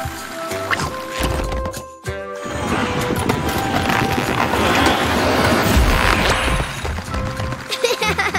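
Cartoon background music with steady notes, then, after a short break, a long noisy sound effect that swells and fades over about five seconds as the toy train passes through a glowing magic tunnel.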